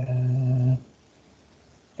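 A man's drawn-out hesitation sound, a steady "uhh" held on one pitch for under a second at the start, then a pause.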